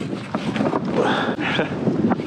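Gusty wind buffeting the microphone over choppy water lapping against a kayak.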